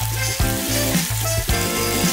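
Starch-dusted hairtail (cutlassfish) pieces sizzling as they fry in oil in a frying pan. Background music with a regular bass beat plays over it.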